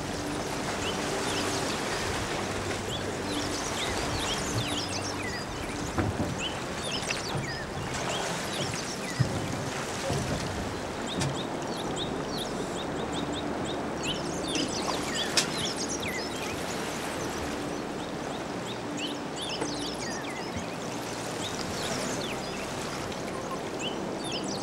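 Shallow seawater splashing and trickling around a beached aluminium boat as people wade beside it and load it, a steady watery wash with many short high chirps running through it.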